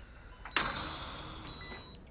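Hospital equipment in a quiet room: a sharp click, then a steady hiss with faint high electronic tones from a ventilator and patient monitor.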